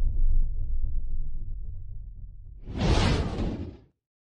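Logo-animation sound effects: a deep rumble that slowly fades, then a whoosh about two and a half seconds in that cuts off suddenly.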